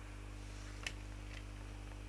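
Steady low electrical hum, with one sharp click a little under a second in and a fainter click about half a second later.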